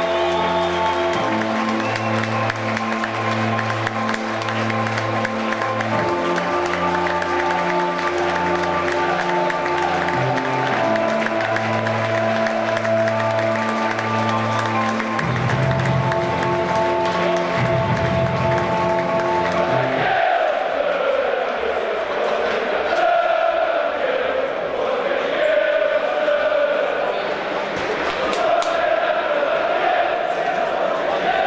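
Music with long held chords plays for about twenty seconds. It then stops, and a stadium crowd of football supporters sings a chant together, their massed voices rising and falling.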